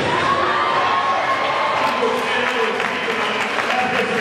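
Audience applauding a powerlifting attempt in a large hall, with crowd voices under the clapping; the clapping grows denser about two seconds in.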